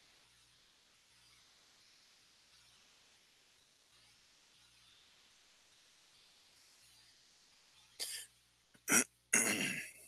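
A man coughing and clearing his throat: three short, loud bursts in the last two seconds, after a stretch of faint, steady room hiss.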